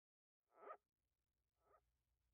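Near silence: a faint low hum begins about half a second in, with two brief faint sounds, one about half a second in and a shorter one near the end.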